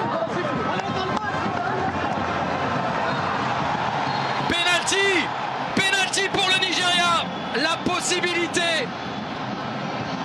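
Stadium crowd noise: a steady din of many voices, with loud shouting from the stands in several bursts from about halfway through.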